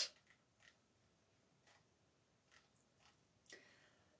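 Near silence: room tone with a few faint, scattered clicks, one slightly louder about three and a half seconds in.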